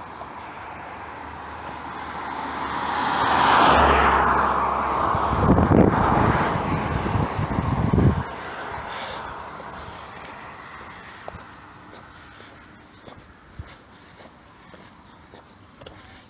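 A car passing close by: its road noise swells over a couple of seconds, peaks about four seconds in and fades away. Low rumbling buffets hit the microphone for a few seconds while it goes by.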